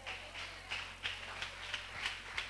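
Faint, quick tapping, about three or four light taps a second.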